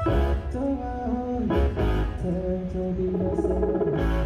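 Live band playing a song: electric guitar, keyboard and electronic drum kit.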